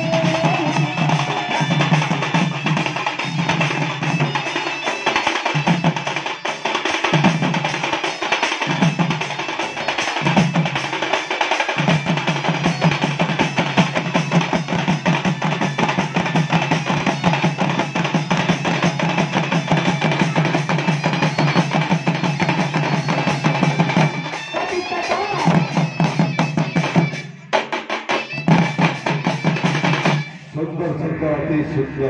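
Western Odisha folk drum ensemble, several barrel drums (dhol) and other hand drums played together in a fast, dense rhythm, with a short break in the drumming near the end.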